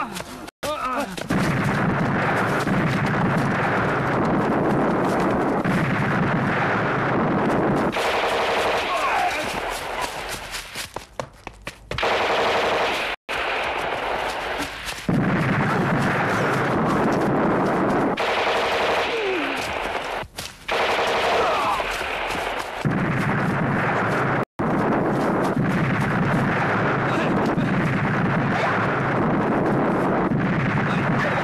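Rapid, continuous machine-gun fire in a dramatised battle sound mix, keeping up through the whole stretch with only a few split-second breaks. Men shout and cry out over it a few times.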